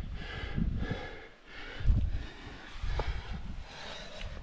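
A rock climber's heavy breathing, close to the microphone, as he works up a granite crack. Uneven low rumbles of wind or handling on the microphone, loudest about two seconds in, and a couple of light knocks.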